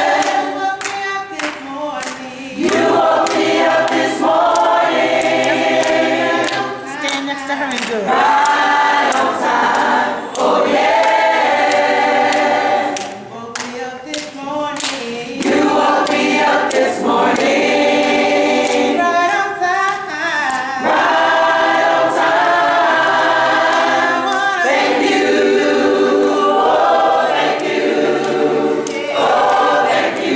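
A choir singing a gospel song a cappella, many voices together, in phrases with short breaks between lines.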